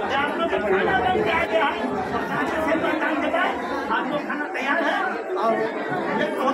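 Crowd chatter: many voices talking over one another at once, with no single voice standing out.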